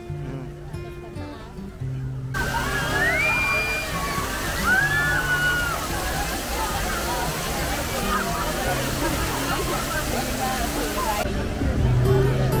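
Fountain water jets splashing down, a steady rush of spray that starts about two seconds in and stops abruptly near the end, with high voices calling over it. Background music with a bass line plays throughout.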